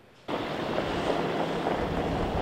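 Dump truck running: a low engine hum under a steady rushing noise, coming in about a quarter second in.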